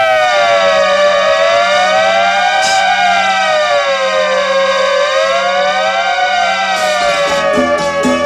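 Instrumental break in a Kannada film song: several long tones slide slowly up and down, crossing one another like a siren, over a steady low drone, with no drums. A beat comes back in near the end.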